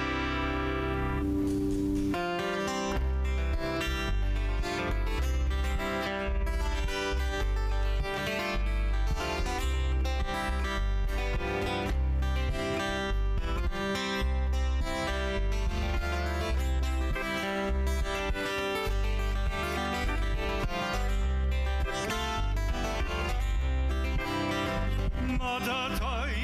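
Live Hawaiian trio playing an instrumental passage: picked double-neck acoustic guitar and lap steel guitar over electric bass, with a steady bass pulse. A man's singing voice comes in at the very end.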